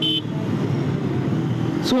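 Bajaj Pulsar 150's single-cylinder engine running steadily at cruising speed, about 73 km/h, with road and wind noise over it. A short, high horn toot sounds right at the start.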